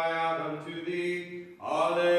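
A man's voice chanting liturgical text on a nearly level reciting tone, with a brief break about one and a half seconds in before the next phrase begins.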